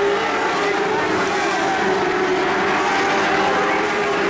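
Several Mod Lite dirt-track race cars' engines running at speed around the oval, their overlapping engine notes drifting up and down in pitch as they go through the turns.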